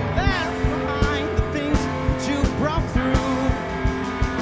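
Live rock band: distorted electric guitar playing a lead of swooping, bending notes over sustained low notes and a steady drum beat.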